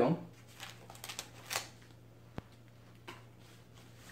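Thin plastic bag rustling and crinkling in short bursts as it is pulled off a guitar, with one sharp click a little over two seconds in.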